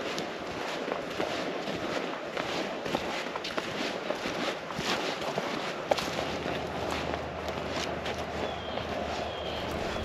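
Footsteps of people walking over dry field stubble and grass: a continuous crunching and rustling of steps.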